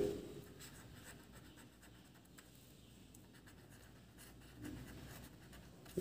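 Faint scratching of a marker pen writing on paper, a run of short strokes as a word is written out.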